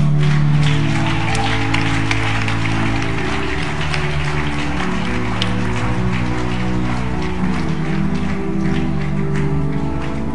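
Instrumental music of slow, held chords, with an audience clapping over it; the clapping starts right at the beginning and is thickest in the first few seconds.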